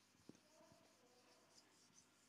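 Near silence, with faint rubbing of a whiteboard duster wiping across the board.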